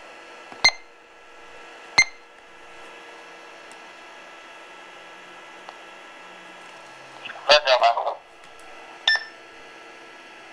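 Key beeps from a handheld ham radio transceiver as its buttons are pressed to switch it to D-STAR digital mode: two sharp beeps in the first two seconds and a shorter one near the end, over a steady electrical hum. A brief voice-like burst comes about three-quarters of the way in.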